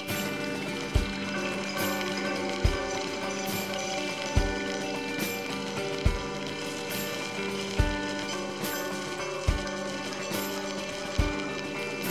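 Instrumental passage of an alternative rock song with no singing: sustained chords held steady, with a low thump about every one and three-quarter seconds.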